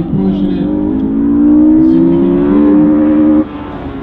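Car engine accelerating hard on an autocross course, its pitch climbing steadily under load. The engine sound cuts off abruptly about three and a half seconds in.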